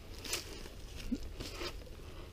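Faint footsteps crunching and rustling in dry leaf litter on a woodland trail, a few soft irregular steps, over a low steady rumble.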